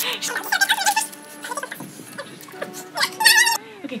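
People laughing, in bleating, wavering bursts, loudest near the start and again about three seconds in, over quiet background music.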